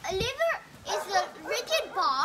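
A child talking, the voice rising and falling in quick, lively phrases.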